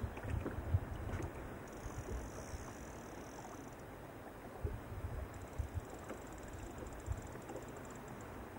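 Wind buffeting the microphone in irregular low gusts, over small waves lapping against the hull of a wooden boat on a choppy lake.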